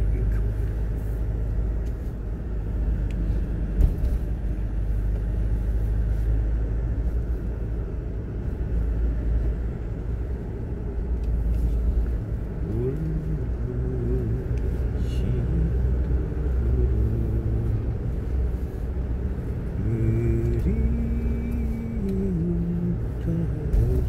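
Steady low rumble of a car's engine and tyres heard from inside the cabin while driving. From about halfway through, a man hums a tune over it.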